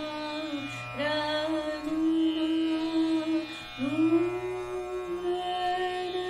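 Female dhrupad vocalist singing long held notes in Raag Jaijaiwanti over a steady tanpura drone. She swoops up into a new note about a second in and again near four seconds.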